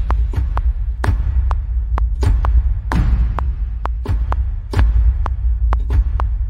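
Sampled cinematic trailer-style hit ringing on as a deep, sustained low rumble, over sharp metronome clicks about twice a second at a 128 bpm tempo.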